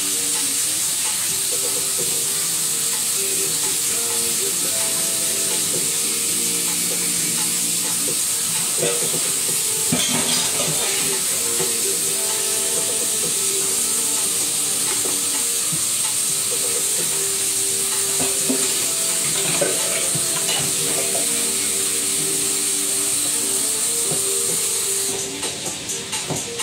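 Oil sizzling steadily in a frying pan as food fries on an electric coil burner. Just before the end the steady sizzle turns to a quieter, pulsing crackle.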